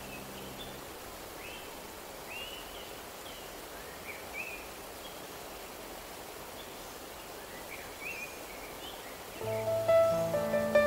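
A steady rush of running water with birds chirping, short up-and-down calls every second or so. A held music chord dies away about a second in, and music starts again just before the end.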